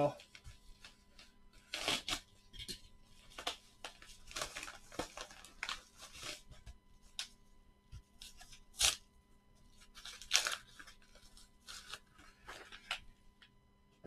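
Padded paper mailer being torn open and handled: irregular bursts of paper tearing and crinkling, loudest about two, nine and ten seconds in.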